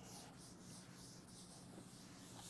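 Faint, repeated rubbing strokes of a duster wiping chalk off a chalkboard.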